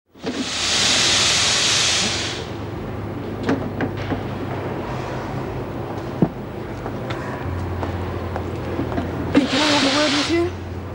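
Industrial laundry steam press venting steam: a long hiss in the first couple of seconds and another near the end, over a steady low hum with scattered clicks from the press being worked.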